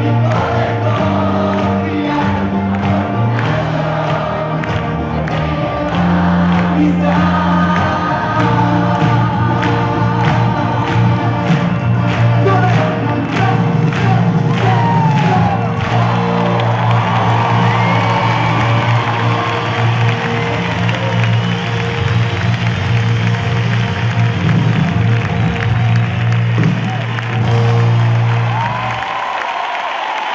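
Live band music from a stage sound system in a large arena, with a steady bass line and a big crowd singing along and cheering. The percussion fades about halfway through. The band stops just before the end, leaving the crowd.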